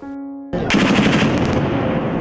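A held music chord breaks off half a second in, and a loud, dense burst of rapid gunfire takes over. The shots are packed close together and tail off into a hiss.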